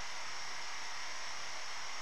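Steady low hiss of background room and recording noise, with no distinct sounds.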